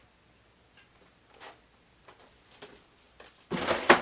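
Cardboard packaging being handled: a few faint taps and clicks, then a louder dry rustle for about half a second near the end as a hand reaches into a cardboard box.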